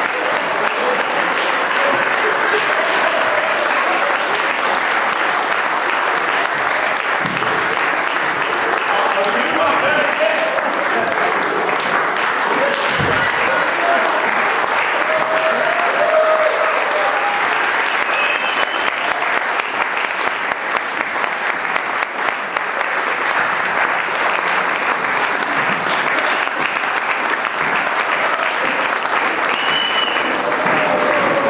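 Audience applauding steadily for the whole stretch, with scattered voices and calls mixed into the clapping.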